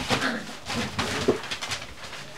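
Cocker spaniel puppies play-growling and grumbling as they wrestle, with newspaper crackling under their paws.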